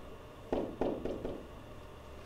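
A few light taps of a stylus on a touchscreen as a label is handwritten, coming about half a second to a second and a quarter in, over a faint steady room hum.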